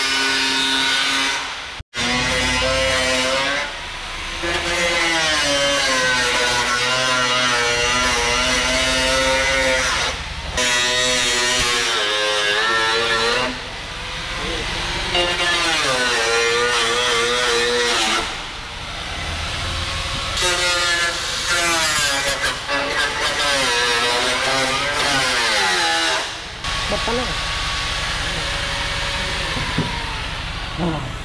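Electric angle grinder cutting into a Ford Mustang's front fender, its whine sagging and recovering in pitch as the disc bites, in runs of several seconds with short breaks. The grinding stops a few seconds before the end.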